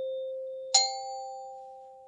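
Metal chime bars struck with a mallet: a low note rings on and fades, and a higher note, a leap up from it, is struck about three-quarters of a second in and rings out. The pitches step upward with gaps between them.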